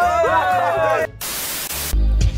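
Young men's excited shouts and cheers, with one long held "eoi!" call. After about a second the voices cut off abruptly into about a second of even static hiss, an edited-in noise effect.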